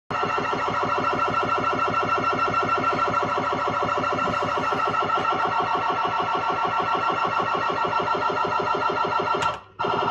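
Bell-Fruit Super Play fruit machine playing a loud electronic sound effect: a fast, evenly pulsing warble of several tones at once. It cuts out briefly just before the end and then starts again.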